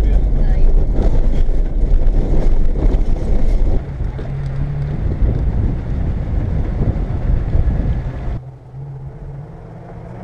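Mitsubishi L300 4WD camper van driving over a heavily corrugated dirt road. Heard from inside the cabin, it gives a loud, dense rumble and rattle for the first four seconds or so. The sound then drops abruptly to a steadier, quieter engine hum, which falls quieter again a little after eight seconds.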